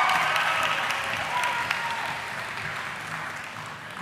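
Audience applause dying away gradually.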